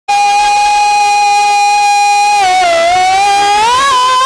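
A male ragni singer holding a long, high sung note, hand cupped to his ear: the pitch stays level for about two and a half seconds, then dips and slides up to a higher note near the end.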